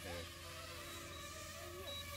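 DJI FPV quadcopter's propellers buzzing faintly at a steady pitch as it comes down to land.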